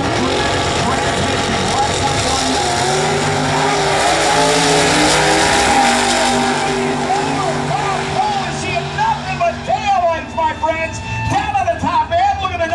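Two nostalgia pro stock drag cars' V8 engines at wide-open throttle, launching off the line and racing down the track, loud and dense for the first several seconds. The engine sound then eases off and grows uneven as the cars pull away, and an announcer's voice comes through over it near the end.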